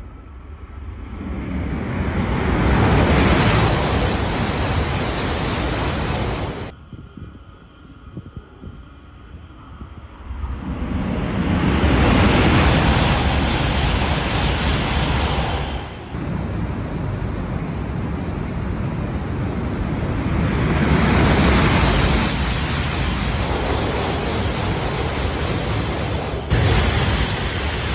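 Shinkansen bullet trains, among them a green-and-pink E5 series, passing through a station at high speed: a loud rushing roar of air and wheels that swells as each train goes by. The sound is made of several separate passes spliced together, and two of them cut off abruptly.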